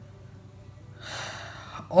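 A woman's audible in-breath, a soft hiss lasting under a second, about a second in, just before speech resumes.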